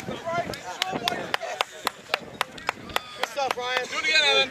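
Sharp, evenly spaced clicks, about four a second, under faint voices.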